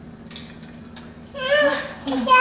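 Faint handling sounds with one soft click about a second in, as cookie cutters are worked into set Jell-O in a baking pan. A child's short high-pitched voice sounds near the end.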